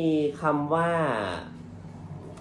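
A man speaking Thai for about a second and a half, then a short pause.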